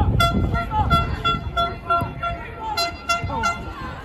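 A horn tooting a quick run of short, even blasts, about three a second, for roughly three seconds, over the voices of a football crowd.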